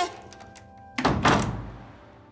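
A door slammed shut about a second in: one heavy thud that fades away over faint held music tones.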